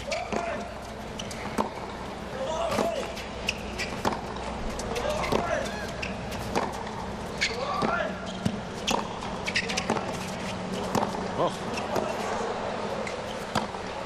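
Tennis rally on a hard court: a long run of sharp racket strikes on the ball and ball bounces, about one a second, over a steady low crowd murmur.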